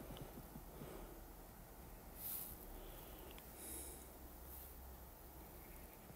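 Very quiet room tone with two soft breaths from the person at the microphone, one about two seconds in and another near four seconds.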